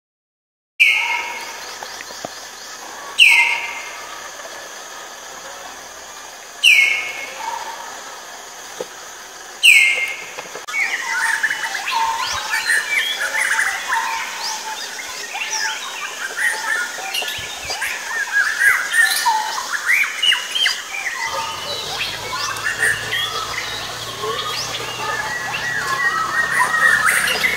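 Birds calling: four loud, sharp notes, each falling in pitch, about three seconds apart, then a dense chorus of many overlapping chirps and whistles.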